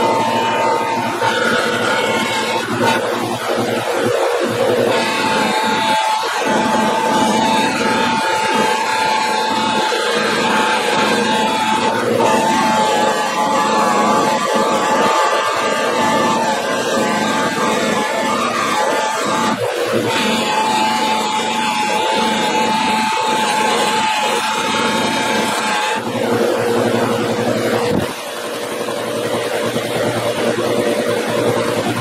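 Bench buffer motor running with a steady whine while a screwdriver shaft is held against the spinning buffing wheel to polish off rust. The sound changes abruptly several times.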